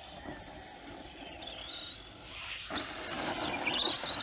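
High-pitched whine of an RC truck's brushless electric motor (HPI 4000kv in an Arrma Senton 4x4), rising and falling in pitch with the throttle, with drivetrain and tyre noise on grass. It grows louder over the last second and a half as the truck drives up close, and the whine climbs sharply near the end.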